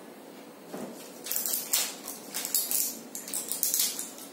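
Handling noise: a run of short rustles and crinkles as tablet packets and other small first-aid items are picked up and put into a cardboard box. It starts about a second in.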